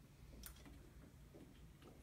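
Near silence: room tone with a faint low hum and a single faint tick about half a second in.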